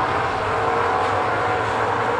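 Late model street stock race cars' V8 engines running together at racing speed, a steady blended drone with no single car standing out.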